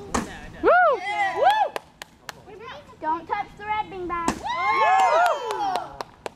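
Children shouting and squealing in high, rising-and-falling calls, a short burst about a second in and a longer one near the end, with a few sharp knocks in between.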